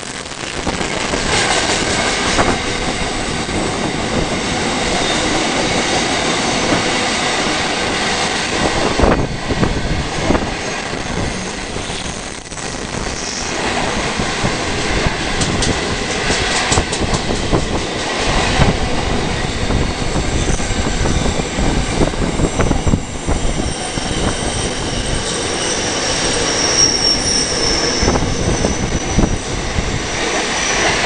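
Container freight wagons rolling past close by: a steady loud rumble of steel wheels on rail, with repeated clacks as wheels cross rail joints and a thin high wheel squeal near the end.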